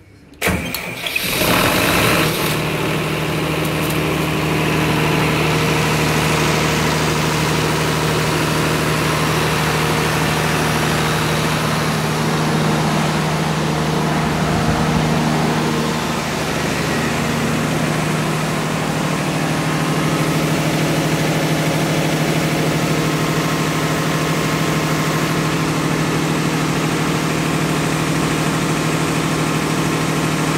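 MWM diesel engine of a 114 kVA generator set cranked on its starter and catching about half a second in, rough for a couple of seconds, then running steadily with no load yet applied.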